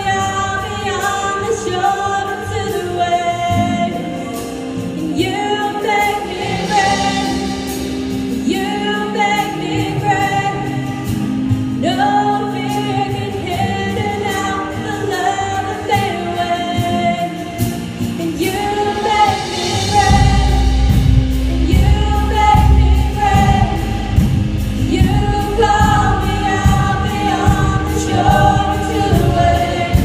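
Live worship band playing a contemporary worship song: women's voices singing the melody over electric guitar and keys. About two-thirds of the way through, the bass and drums come in heavier with a steady beat and the song builds.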